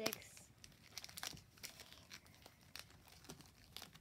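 Foil Pokémon booster pack wrappers crinkling in short, scattered bursts as packs are picked up by hand and gathered into a stack.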